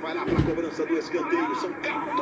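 A football match broadcast playing in the background: a TV commentator talking, with one dull thump about a third of a second in.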